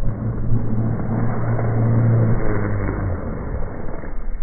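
Proboat Blackjack 29 RC catamaran's brushless electric motor running at speed on a 6S LiPo, a steady whine over the hiss of its spray that drops away about three seconds in.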